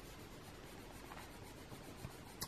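Faint, steady scratching of a coloured pencil being rubbed across the paper of a colouring book.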